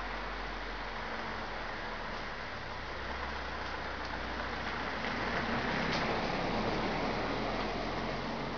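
Street traffic: a motor vehicle's engine and tyre noise, a steady rush that swells a little in the second half and eases near the end.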